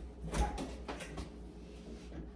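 A few light knocks and clatters of things being handled, in quick succession about a second in, over a steady low room hum.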